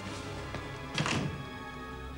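Background music with sustained tones. About a second in, a single loud thunk as a wooden sauna door is pushed shut.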